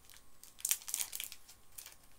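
Crinkling and tearing of a chocolate bar's wrapper as it is unwrapped by hand: a quick run of sharp crackles, busiest between about half a second and a second in.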